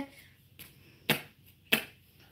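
Two sharp knocks a little over half a second apart as a kitchen knife is jabbed down at a deflated soccer ball on a wooden desk.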